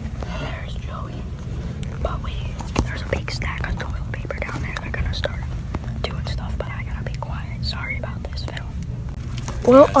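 Hushed whispering with scattered clicks and rustles of handling over a steady low hum; a normal speaking voice breaks in near the end.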